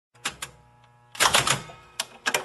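Sharp mechanical clicks like keys striking: two single clacks, then a quick flurry of clicks about a second in.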